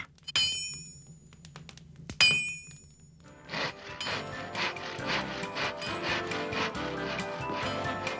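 A hammer striking an anvil twice, about two seconds apart, each blow leaving a clear metallic ring. Background music rises and fills the second half.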